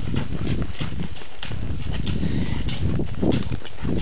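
Horses walking along a wet, muddy trail, heard from the saddle: a steady run of hoofbeats over a low rumble.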